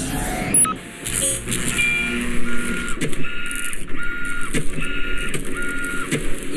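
Sound effects for an animated title graphic: a whoosh, then a mechanical, printer-like whirring with short electronic beeps repeating about twice a second and a few sharp clicks.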